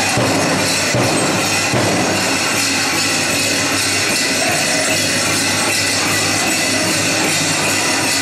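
Powwow drum and singing heard as a loud, continuous wash in a reverberant gymnasium, mixed with the jingling of metal cones and bells on the dancers' regalia.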